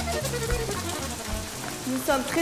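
Rain falling steadily on wet pavement, with background film music playing over it.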